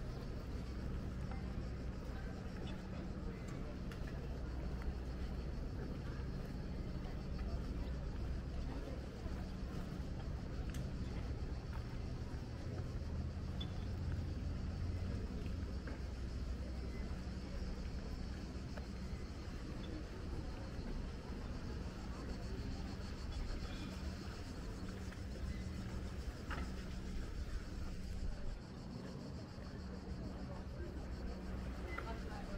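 Outdoor ambience of a steady low engine hum, with faint voices of people walking past and a few light ticks.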